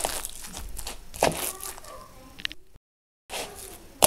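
A metal spoon stirring cottage cheese with raw eggs in a bowl: soft scraping and squishing, with a couple of sharp clicks of the spoon against the bowl. About three seconds in the sound drops to a moment of dead silence.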